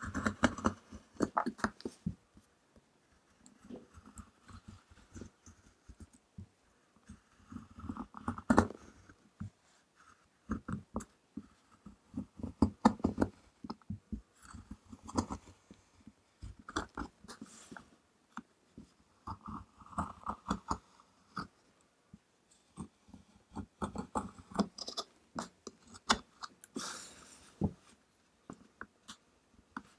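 A small metal spatula crushing and scraping pressed powder in a makeup palette's metal pans. The powder crumbles with crunchy, crackly sounds and sharp clicks where the tool knocks the pan, in spells of a second or two with short pauses between.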